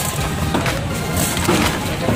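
Plywood and wooden boards of a makeshift stall being wrenched apart by hand: several sharp wooden knocks and cracks as the panels come loose.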